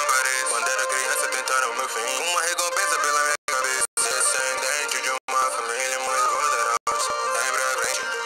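Portuguese-language rap song about Satoru Gojo playing: a rapped and sung vocal over a beat. The sound is thin, with no bass, and cuts out to silence four times for a split second.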